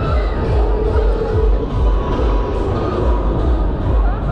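Loud fairground ride music with heavy bass, over the shouts and voices of riders and the crowd.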